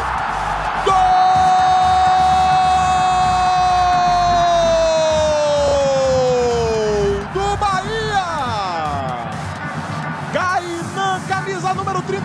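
TV football commentator's long drawn-out goal shout, one held note of about six seconds that sags in pitch at the end, over stadium crowd noise; excited commentary resumes after it.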